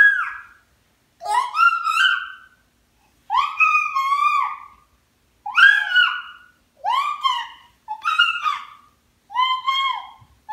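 A baby's high-pitched vocalizing: a string of about seven drawn-out squealing calls, each about a second long, rising in pitch and then holding, with short pauses between them.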